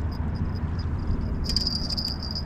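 Insects trilling in a steady high-pitched pulsing buzz over a low outdoor rumble, the trill growing louder about one and a half seconds in.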